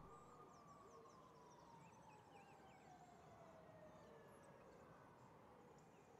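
Very faint distant siren slowly winding down in pitch over several seconds, with faint bird chirps.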